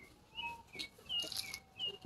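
A bird chirping faintly outdoors: about five short, high chirps spread through two seconds.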